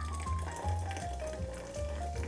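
Soda water poured from a can onto ice in a tall glass, fizzing as it tops up the drink, under background music whose melody falls slowly note by note.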